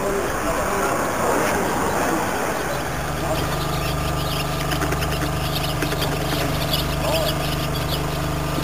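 A broad rushing noise for the first three seconds, then a steady low engine hum, idling, from about three seconds in.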